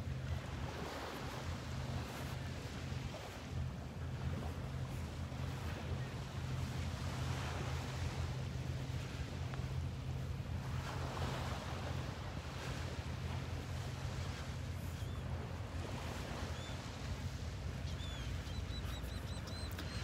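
Gentle Gulf surf washing ashore: a soft steady rush that swells and eases every few seconds, with a low steady rumble underneath and a few faint high chirps near the end.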